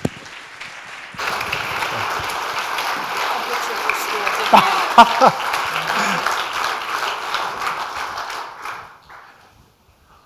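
Audience applauding: the clapping starts about a second in, holds steady, and dies away near the end, with a short cheer from the crowd about halfway through.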